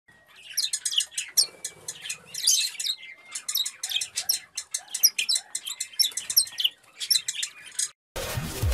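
Small birds chirping in quick, dense runs of short, high-pitched chirps, with a few brief pauses.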